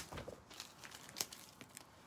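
Faint rustling and crinkling of a cardboard box's flaps and packing being pulled open, with a few light scrapes and a sharper tick about a second in.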